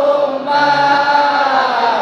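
Men's voices chanting an Islamic devotional song in long, held notes that glide slowly from one pitch to the next, with a new phrase starting about half a second in.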